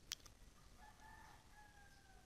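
Near silence, with a short click just after the start and then a faint, drawn-out call from a distant bird, lasting about a second and falling slightly in pitch.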